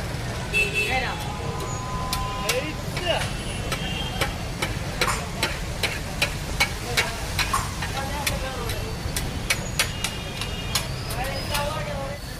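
Metal spatula striking and scraping on a large tawa as chopped liver is stir-fried, sharp irregular clacks several times a second over a sizzle. A low steady rumble of street traffic runs underneath.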